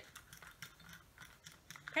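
Faint scratching and light clicks of small objects being handled: a glass spray bottle turned in the hands, with plastic packaging nearby.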